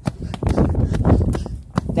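Jogging footsteps on a concrete sidewalk, several footfalls in a row, with wind rumbling on the phone's microphone.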